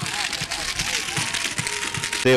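Crowd applause, a steady dense patter of clapping, with background voices mixed in.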